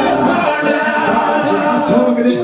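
A man rapping into a handheld microphone through a club PA, with the beat dropped out so the voice is heard alone.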